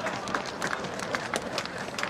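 Scattered hand claps and a few voices shouting in celebration of a goal: short, irregular sharp claps over a noisy background.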